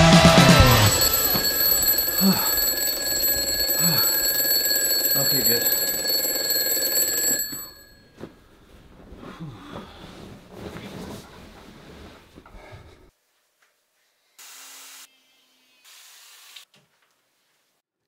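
Rock music cuts off about a second in, leaving a steady, high electronic ringing tone that holds for about six seconds and then stops. Faint rustling follows, then near silence with two short bursts of hiss near the end.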